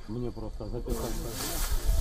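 Men's voices talking on raw field audio. About a second in, the sound changes abruptly to a steady, loud hiss.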